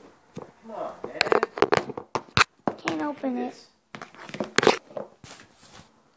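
Close handling noise: a run of sharp clicks, knocks and rustles, densest in the first half and again about two-thirds through. Between them a voice makes short unclear sounds.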